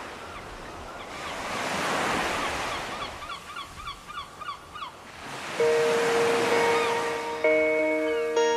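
Surf breaking and washing up the beach, swelling and fading. About three seconds in, a laughing gull gives a rapid laughing series of about nine calls, some four a second. Soft music with held notes comes in over the surf near the end.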